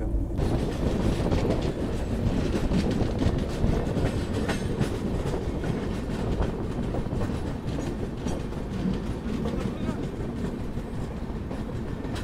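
Passenger train coach running on the rails, heard from its open door: a steady rumble with a dense clatter of wheels over rail joints, easing off a little toward the end as the train pulls into a station.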